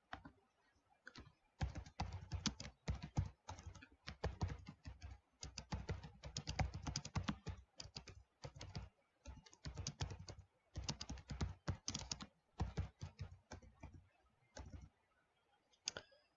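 Typing on a computer keyboard: runs of quick keystrokes broken by short pauses, starting about a second and a half in and stopping shortly before the end.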